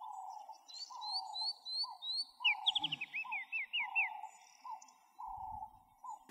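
Several birds calling together: a repeated mid-pitched call throughout, short rising chirps higher up, and a quick run of sliding notes in the middle.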